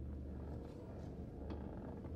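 Low steady hum of a car cabin with the engine idling, with a few faint clicks.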